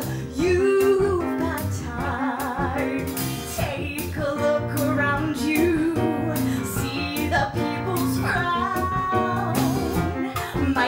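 A woman singing a musical theatre song into a microphone, holding notes with vibrato, accompanied by a small live band with guitar and cello.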